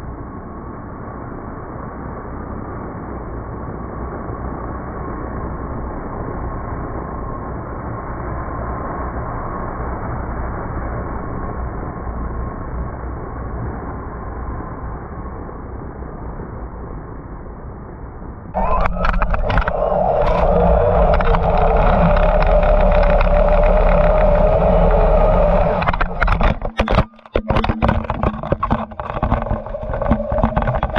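Traxxas XRT RC truck's brushless electric motor running flat out as the truck skims across water on paddle tires, with the rush of its spray. For most of the time it is a dull, steady rush with a faint whine; about two-thirds of the way in it becomes much louder and closer, a steady motor whine, which breaks up into choppy bursts near the end.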